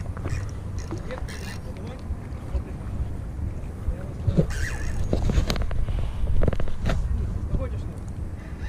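Wind rumbling on the microphone, with scattered clicks and knocks of a spinning reel being cranked and handled while a hooked fish is played on a bent rod; the clicks are thickest midway through.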